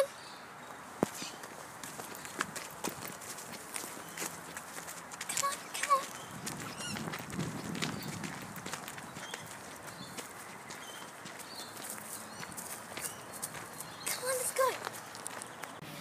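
Footsteps on a dry dirt path, walking and then running, with scattered light clicks and a few brief bird chirps.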